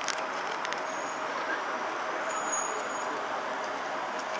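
Steady city street traffic noise, an even hum with no distinct events and a few faint clicks near the start.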